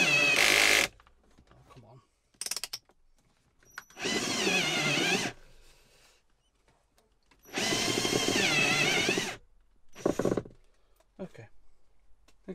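Ryobi cordless drill with a step drill bit boring a hole through the plastic dashboard panel. It runs in three bursts of one to two seconds, the motor's whine dipping in pitch and recovering during each run, with brief short blips of the trigger between them.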